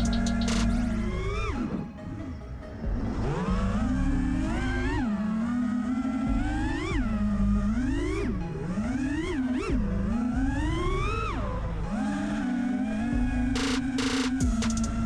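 An FPV quadcopter's motors whine, the pitch rising sharply and falling back again and again as the throttle is worked, with a short dip about two seconds in. Electronic background music with a steady bass plays under it.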